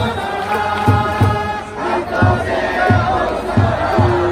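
Baseball cheering section: a crowd of fans chanting a cheer song in unison over a bass drum beating about twice a second.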